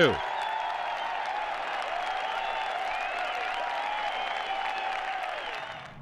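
Golf gallery applauding and cheering, a steady patter of clapping with voices rising over it, in applause for a match-winning shot. It fades out near the end.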